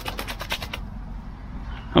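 Wet dog shaking itself off after a bath: a quick rattle of flapping, spattering sounds as water flies from its coat, lasting about the first second.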